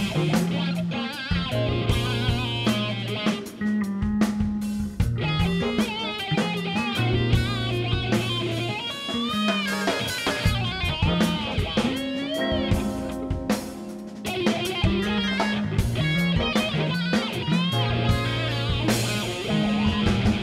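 A live progressive rock band playing an instrumental passage: an electric guitar lead with bent, wavering notes over bass, a drum kit and keyboards.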